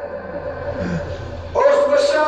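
A man chanting a Pashto noha (mourning lament) into a microphone: a short pause, then the voice comes back loud on a long held note about one and a half seconds in.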